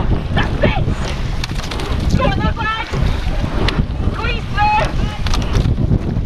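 Wind buffeting the microphone of a camera on a moving rowing boat, with water rushing past the hull, as a steady low rumble. Voices are heard twice, about two seconds in and again about four and a half seconds in.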